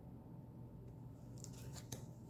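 Cards being handled: quiet at first, then a quick run of light, crisp clicks in the second half.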